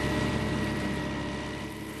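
A steady mechanical drone with a constant high whine, slowly fading away.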